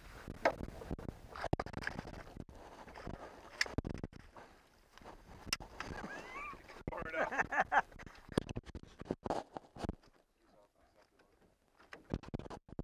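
Scattered knocks and clatter of gear against an aluminium boat while a spinning reel is worked to bring in a hooked pike, with a landing net in use. The knocks are busiest in the first eight seconds and thin out after about ten seconds.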